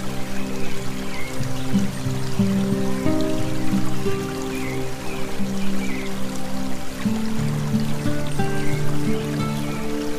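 Calm, slow background music of long held low notes that change every second or so, with a trickling-water sound and a few brief high chirps mixed in.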